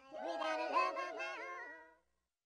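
A high-pitched voice singing a Spanish-language children's song over music, fading out at the end.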